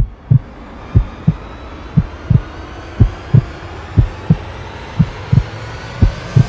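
Heartbeat sound effect: a slow, even lub-dub, about one double beat a second, over a low steady hiss.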